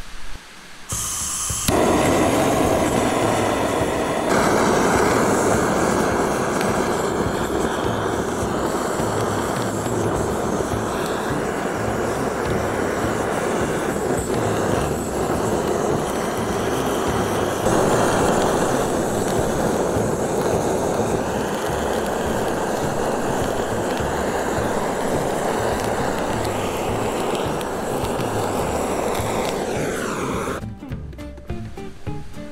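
Handheld butane gas torch on a gas canister, lit about two seconds in and then burning with a steady rushing hiss as it sears salmon nigiri topped with mayonnaise and cheese.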